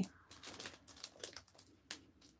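Clear plastic sheet protector and a packaged rubber stamp set crinkling and rustling in irregular short strokes as the packet is slid into the pocket of a binder page, with one sharper tick near the end.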